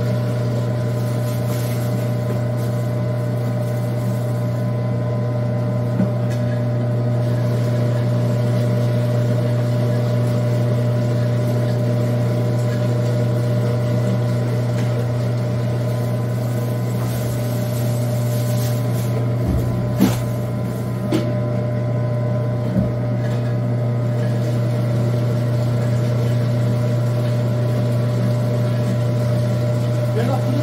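Stainless electric food grinder's motor running with a steady hum while grinding pears, apples and radish, with a few short knocks about two-thirds of the way through.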